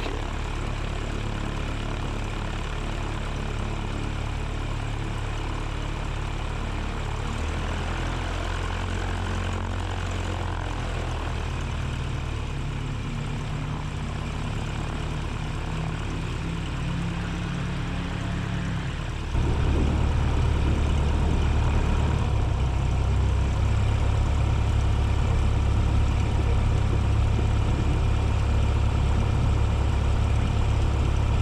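Zenith CH-750 Cruzer's engine and propeller running at low taxi power, steady. About two-thirds of the way through, the engine note rises and gets louder as power is added.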